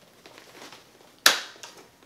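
A single sharp snap a little over a second in, as the clips of the Mogabi 200 travel guitar's detachable top frame piece are forced home into their slots in the body, with faint handling noise before and after.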